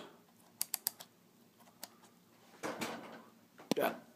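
Mode dial of a Canon T3i DSLR clicking through its detents as it is turned to manual mode: four quick clicks about half a second in and one more a second later. A short rustle of the camera being handled follows near the end.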